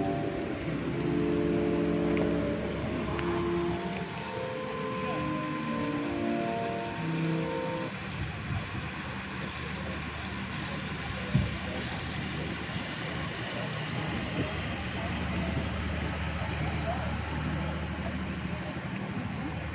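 Sustained, overlapping musical tones fade out about halfway through. After that comes the steady low engine hum of a canal tour boat approaching and passing close by, with a single sharp knock partway through.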